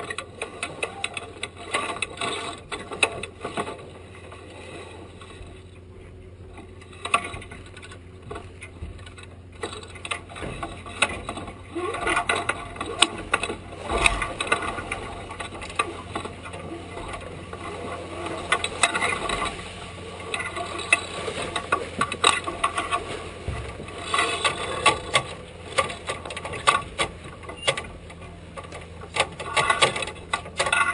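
Sailboat winch ratchets and deck hardware clicking irregularly as the crew trims the spinnaker sheets through a gybe, the clicks coming thicker in the second half.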